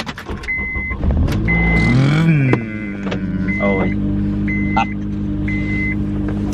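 A car engine starting: it catches about a second in, revs up briefly and settles into a steady idle. Over it a dashboard warning chime beeps about once a second, the seatbelt reminder for an unfastened belt.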